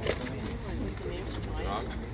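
Several people talking indistinctly, with a short knock right at the start, over a steady low rumble.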